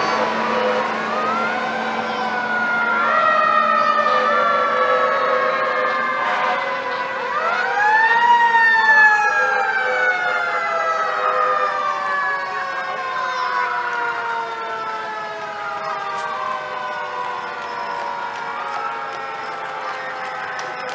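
Several fire truck sirens wailing at once, overlapping. Each winds up quickly in pitch and then falls away slowly over several seconds, and they start again one after another, the loudest about eight seconds in.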